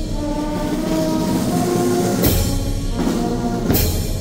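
Marching brass band playing a slow funeral march: sustained brass chords over sousaphone bass, with two percussion strikes, one about two seconds in and one near the end.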